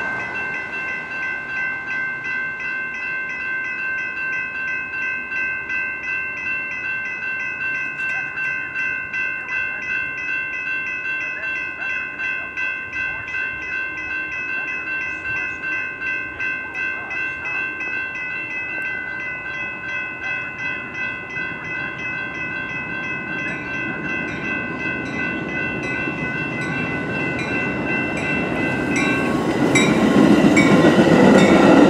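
Railroad grade-crossing warning bells ringing in a steady, pulsing rhythm. Over the last several seconds the rumble of an approaching Metra train led by a Nippon Sharyo bilevel cab car grows louder as it reaches the crossing.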